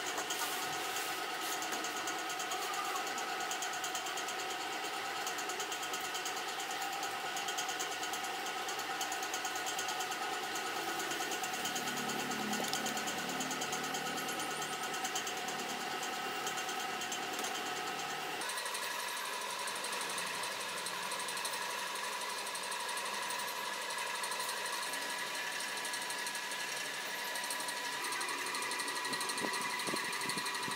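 A steady machine hum made of several held tones. About two-thirds of the way through, the tones jump abruptly to a new set of pitches.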